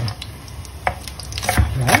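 Kitchen knife chopping green garlic stalks on a plastic cutting board: a few separate, sharp knife strikes about half a second to a second apart.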